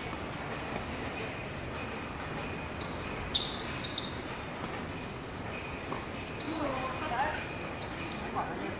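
Outdoor tennis court ambience: a steady background hum, with a tennis ball knocking sharply twice a little before halfway, and faint voices near the end.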